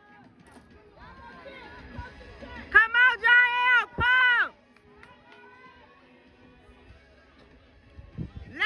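Spectators at a track race shouting and cheering in high-pitched, drawn-out yells, loudest for a couple of seconds about three seconds in, over low crowd noise.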